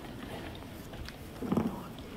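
Low murmur and room noise of a standing audience in a large hall, with one short, low sound about one and a half seconds in.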